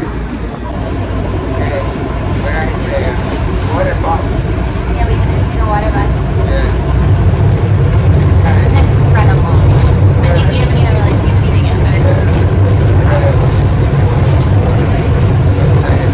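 Engine of a Venice water bus (vaporetto) running with a steady low rumble, heard from inside its passenger cabin, growing louder about seven seconds in. Voices sound faintly over it.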